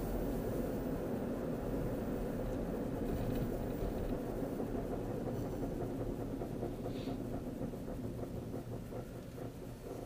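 Steady low road and engine noise inside a moving car's cabin, growing quieter over the last few seconds.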